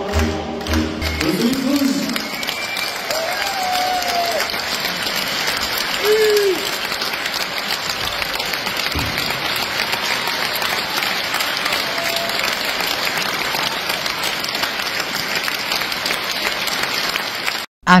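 A large theatre audience applauding, with a few shouts over the clapping. The last of the stage music, with a steady beat, is heard in the first second or so. The applause cuts off abruptly just before the end.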